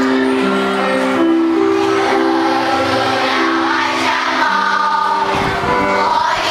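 A large group of children singing a song together in unison, with instrumental accompaniment playing the melody in held notes.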